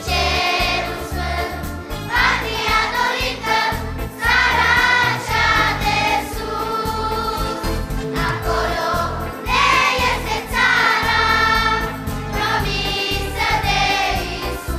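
A children's choir singing a hymn in phrases of a few seconds each, over a steady instrumental accompaniment.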